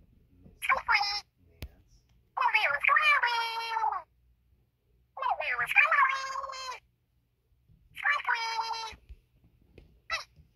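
Squeaky, very high-pitched wordless character voices in four short phrases. Several phrases slide down in pitch at the end.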